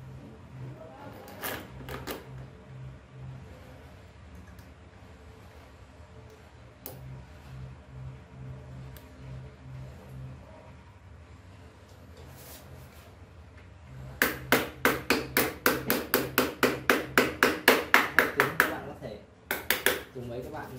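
Hand tool working a bolt on an aluminium CNC carriage: a fast, even run of sharp metallic clicks, about six a second, lasting some five seconds near the end, after a stretch of faint handling knocks.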